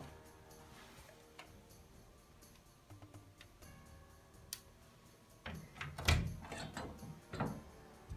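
Background music, with a door with a frosted-glass panel being handled and opened: a cluster of knocks and bumps starting about five and a half seconds in, loudest around six seconds, with another near the end.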